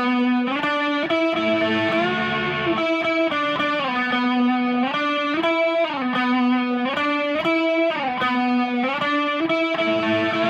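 Les Paul-style electric guitar through a Mesa Boogie amp with a chorus pedal, tuned down a full step, playing a repeating single-note riff with several bent and slid notes.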